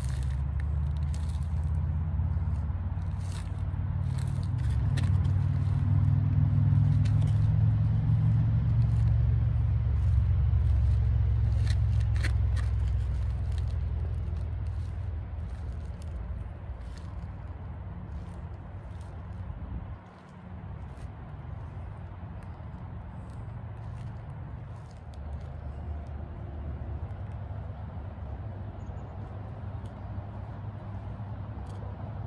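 Low rumble of a vehicle engine that swells over the first few seconds, holds for several seconds and fades about halfway through. Light scuffs and ticks of sneakers on gritty pavement run under it.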